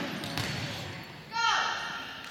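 A volleyball bounces on the gym floor, then about a second and a half in the referee blows a short whistle blast, the signal that authorises the serve.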